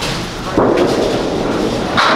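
A candlepin bowling ball landing on the wooden lane about half a second in and rolling down it with a steady rumble, then crashing into the pins at the very end.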